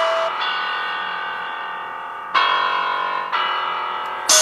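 Background electronic music: held keyboard-like chords that fade, with a new chord coming in just past halfway and another about a second later.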